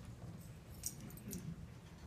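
Faint room noise in a school auditorium while a band waits to play: a low steady hum with scattered small clicks and rustles, the sharpest click a little under a second in.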